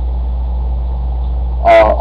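A steady low hum with faint hiss, unchanging throughout; a man's voice starts near the end.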